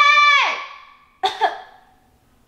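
A woman yelling a name, one long drawn-out high call that drops off at the end, then a shorter call about a second later.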